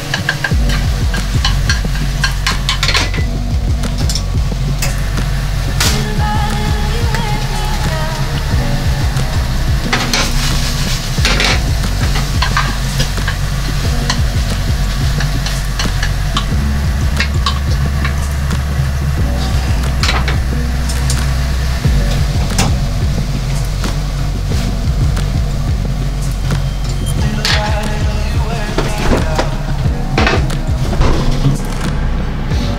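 Egg sizzling as it fries in a rectangular tamagoyaki pan over a gas flame, with chopsticks scraping and clicking against the metal pan as they stir. Background music with a steady bass line plays throughout.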